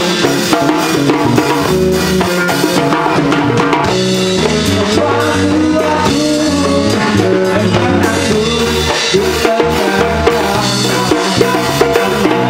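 A live rock band playing loudly and without a break: a drum kit driving a steady beat under electric bass and electric guitars through amplifiers.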